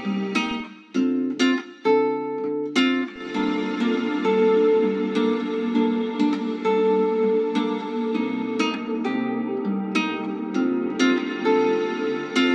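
A plucked guitar melody playing back through a long large-room reverb (ValhallaRoom plugin), its notes ringing on into the reverb tail.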